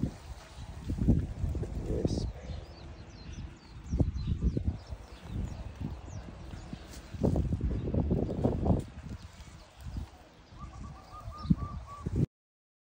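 Wind gusting across the microphone in uneven low rumbles, with small birds chirping in the background and a quick run of repeated bird notes near the end.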